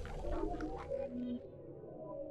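The fading tail of a logo intro's synth music sting: soft held tones dying away.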